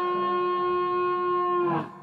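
Final chord of a slide blues number held on resonator guitar and steel guitar, ringing steady, then cut off with a brief slide in pitch near the end.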